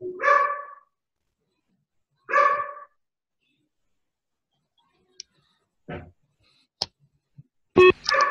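A dog barks twice, about two seconds apart, heard through a video call. A few light clicks and a dull knock follow in the second half.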